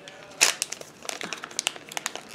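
Product packaging crinkling and crackling as it is handled and opened, with a sharp crackle about half a second in and scattered smaller crackles after it.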